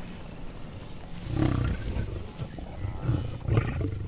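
Lions growling: a string of low, rough growls starting about a second in, over a quiet outdoor background.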